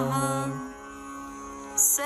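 Mantra chanting over a steady musical drone: a long held final note of "namo namah" fades out about half a second in, leaving the drone alone, and a short hiss comes near the end.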